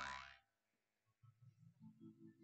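A falling pitch glide, a comic boing-like sound, dies away within the first half second. Near silence follows, with faint low sounds from about a second in.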